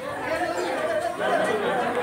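Indistinct chatter: several people talking over one another.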